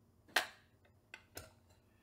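Clicks from handling a battery charger case: one sharp click, then two fainter clicks about a second in.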